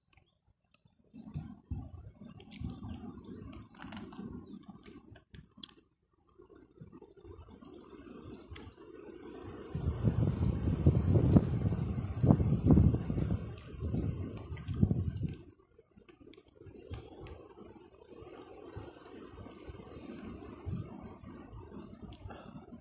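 A person chewing chicken close to the microphone, with irregular clicks and mouth noises over a low rumble. A louder stretch of rumbling noise comes in the middle and lasts about five seconds.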